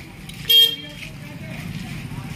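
A single short vehicle horn toot about half a second in, over a steady low street rumble.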